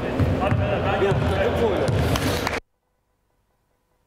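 Indoor basketball game sounds: indistinct voices of players and onlookers with low thuds of a ball bouncing on the court. The sound cuts off abruptly to silence about two and a half seconds in.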